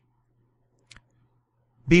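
A pause in a man's spoken reading: a faint steady low hum, a single short click a little under a second in, then his voice starting again near the end.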